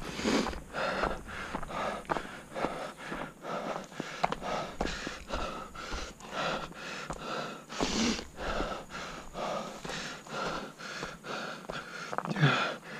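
A running orienteer's heavy breathing, a rhythmic in-and-out about two to three times a second, with footfalls on a dirt and grass path.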